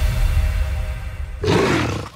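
Soundtrack music with a deep bass dying down, then about one and a half seconds in a short, loud big-cat roar sound effect that closes the track.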